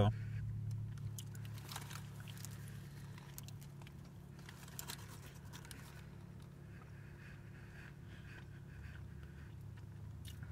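A man chewing a bacon, egg and cheese biscuit with his mouth closed, faint soft crunches and mouth clicks, over a steady low hum inside a car's cabin.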